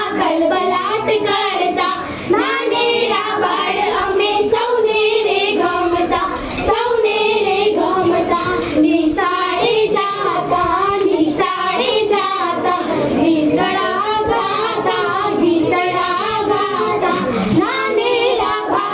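A group of girls' voices singing a children's song (baal geet), with no break.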